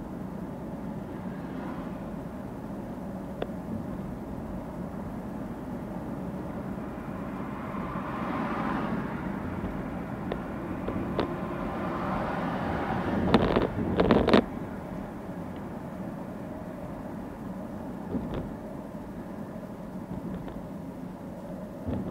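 Car being driven, heard from inside the cabin: steady engine and tyre noise, swelling for a moment about a third of the way in. About two-thirds through there is a quick cluster of loud knocks.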